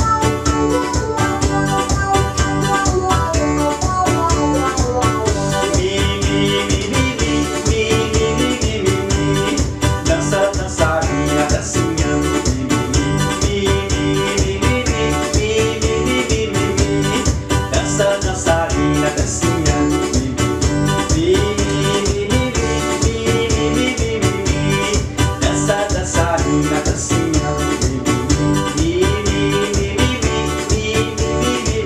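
Instrumental forró-style music: an electronic keyboard plays an organ-like melody over a fast, steady programmed beat.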